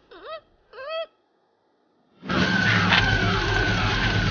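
Two short cries, each bending down and up in pitch, then about two seconds in a car engine cuts in loud and keeps running, with a wavering high squeal over it.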